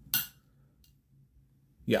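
A single sharp metallic clink of small metal fidget-slider parts being handled, just after the start, then a faint tick a little under a second in.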